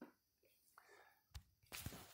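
Near silence in a pause between a man's spoken sentences, with a faint click and soft mouth noises near the end as he draws breath to speak again.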